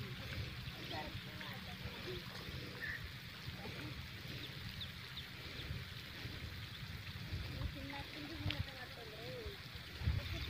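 Low, steady wind rumble on a phone microphone outdoors, with faint, distant voices that cannot be made out, mostly in the later part.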